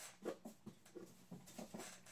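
Faint, scattered light taps and rustles of small desk supplies being handled, about seven or eight small clicks over two seconds.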